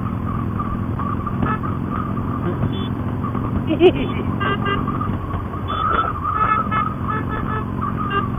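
Harley-Davidson V-twin motorcycle engine running steadily at cruising speed, heard from the bike over wind and road noise, with brief higher-pitched tones scattered through.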